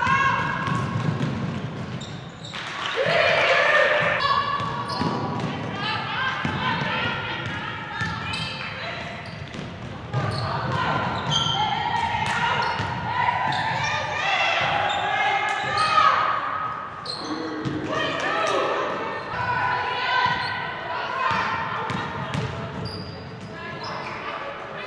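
Live basketball game sound in a large gym: a basketball bouncing on the hardwood court amid indistinct shouts and calls from players, coaches and the bench.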